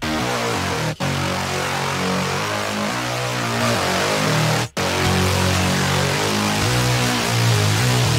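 Layered, distorted saw-wave bass synth playing a quick drum and bass riff, thick and full, with two very short gaps: about one second in and just before five seconds.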